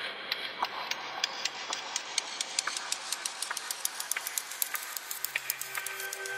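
Sampled Nepalese bell split into its transient and noise component and played through a drum sampler: a dense, irregular crackle of clicks and ticks over a hiss. Near the end, the bell's steady ringing tones begin to come in under the clicks.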